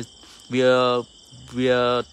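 Insects chirring steadily in the background, with a man's voice twice holding a drawn-out vowel sound of about half a second, which is the loudest thing heard.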